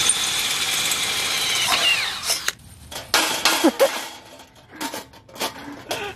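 Power drill running steadily while drilling a bolt hole through diamond plate, then winding down about two seconds in. A few clicks and metal knocks follow.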